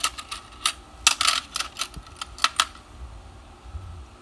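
Loose coins clicking against each other and against a plastic compartment box as they are picked through by hand: a run of quick, irregular clicks that thin out near the end.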